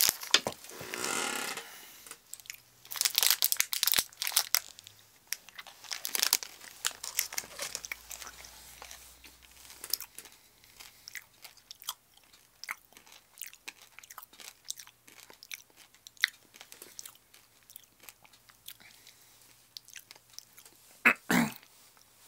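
A person biting into and chewing Cadbury Mini Eggs, the crisp sugar shells crunching. The crunches are loudest in the first few seconds and grow fainter and sparser as the chewing goes on.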